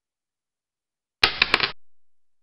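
A short added sound effect, about half a second long, made of three or four quick sharp hits that start a little over a second in and then fade out.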